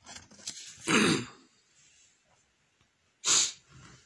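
A person's short cough or throat-clear about a second in, then a brief rustle of paper a little after three seconds as the sheet under the camera is changed.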